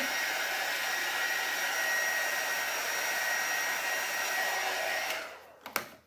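Handheld electric hot-air blower running steadily, a rush of air with a thin whine, blown over a wet white base coat to dry it. It winds down and stops about five seconds in.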